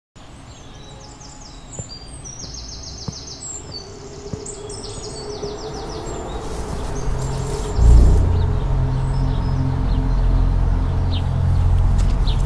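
Birds chirping and trilling over a slowly rising hiss. About eight seconds in, a deep, steady bass drone swells in and takes over as the music intro begins.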